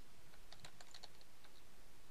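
Computer keyboard typing: a quick run of faint keystrokes, ending about one and a half seconds in.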